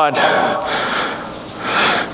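A man breathing audibly between phrases: a drawn, hissing breath that swells just after the start and again near the end.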